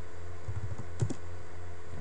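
A few keystrokes on a computer keyboard as code is typed, the sharpest click about a second in, over a steady low hum.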